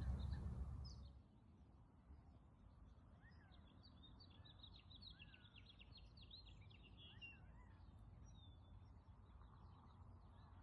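Faint birdsong: many small birds chirping, with a few rising-and-falling whistled calls, thickest a few seconds in. A low rumble stops about a second in.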